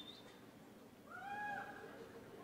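A faint, short, high-pitched call from the audience, lasting under a second: it rises, holds and falls, about a second in. Just before it, a thin high whistle-like tone cuts off at the very start.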